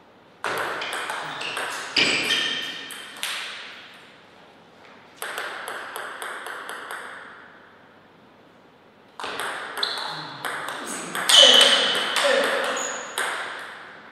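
Table tennis ball clicking off paddles and table in quick rallies, in three bursts of rapid strikes with short pauses between, each fading away in the hall.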